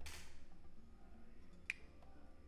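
A low, quiet hum with a single short, sharp click near the end.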